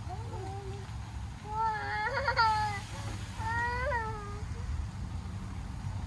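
A small child makes two drawn-out, wordless whiny cries: one about a second and a half in, and a shorter one just before four seconds. The pitch rises and falls. A steady low rumble runs underneath.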